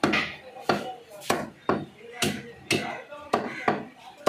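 Chicken being chopped into pieces with a cleaver: a steady run of sharp chops, about two a second.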